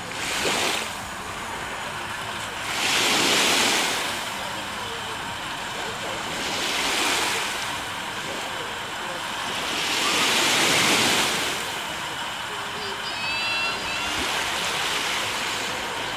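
Small waves washing onto the shoreline, swelling in gentle surges every three to four seconds with a steady hiss between them.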